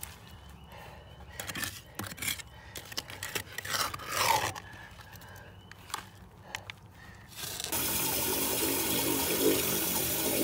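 Scraping and clicking of a hand tool working wet sludge and roots out of a crumbling concrete septic distribution box and into a bucket. About three-quarters of the way through, a steady rush of running water starts: water being run into the box to test the flow to the drain-field laterals.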